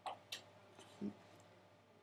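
A few short, faint clicks in quick succession in the first half-second, followed about a second in by a low soft knock, against a quiet room background.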